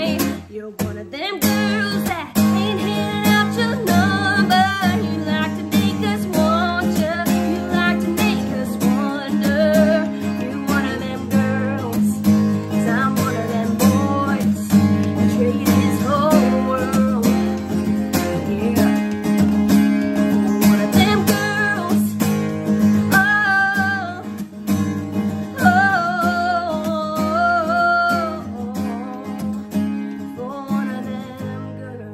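A woman singing a country song while strumming an acoustic guitar, the voice carrying the melody over steady strummed chords.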